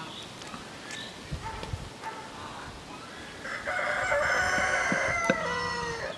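A loud, drawn-out animal call lasting about two seconds. It comes in about three and a half seconds in and ends in a falling tail, after a few soft low knocks earlier on.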